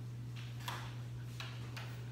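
Chalk on a blackboard: about four short, sharp tapping and scratching strokes as a coil spring is drawn, over a steady low hum.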